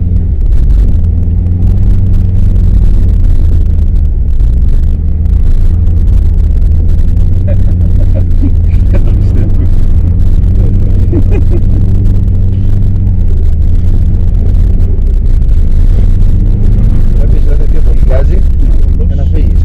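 Subaru Forester 2.0XT's turbocharged flat-four engine running steadily under load, with tyre and road rumble on packed snow, heard loud and low from inside the cabin.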